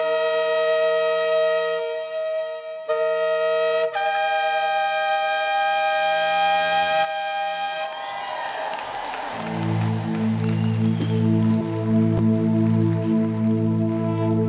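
Two shofars (ram's horns) blown in long sustained blasts, with short breaks, the last one at a higher pitch and held for about four seconds before the horns stop. About ten seconds in, music starts with low sustained chords that pulse slowly.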